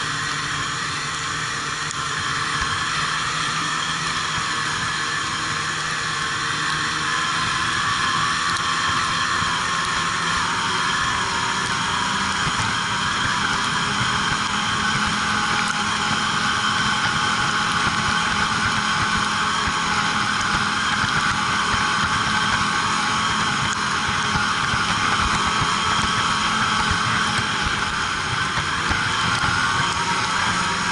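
Ski-Doo snowmobile engine running steadily at cruising speed, heard from aboard the sled. Its droning note holds nearly constant, settling slightly lower about ten seconds in.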